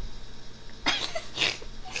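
Two short, breathy, cough-like bursts from a boy, about half a second apart, with a single spoken word.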